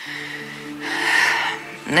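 Soft background music with held notes, and about a second in a woman's breathy sigh lasting under a second, just before she speaks.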